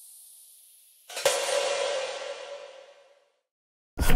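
A single cymbal-like metallic crash a little past a second in, ringing and fading away over about two seconds. Before it, the faint tail of a high hiss dies out.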